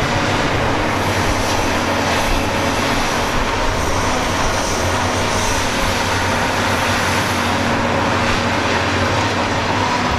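Heavy diesel logging machinery running steadily, with an unbroken engine hum and mechanical noise.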